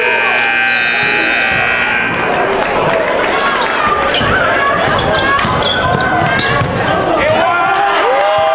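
Gymnasium scoreboard horn sounding one steady tone and cutting off about two seconds in: the end-of-quarter horn as the clock hits zero. Then crowd chatter fills the gym, with a basketball bouncing on the hardwood.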